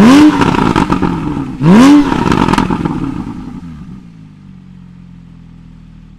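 Porsche 991 flat-six with a Techart sports exhaust, exhaust valves open, revved twice while standing still, the pitch climbing and falling back each time, with a few pops as the revs drop. It then settles to a steady idle about four seconds in.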